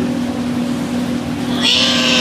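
A child imitating a lamb's bleat, a loud call that starts near the end, over a steady hum.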